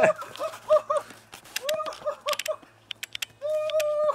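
A series of short animal calls, each rising and falling in pitch, about three or four a second, with a few sharp clicks between them and one longer held call near the end.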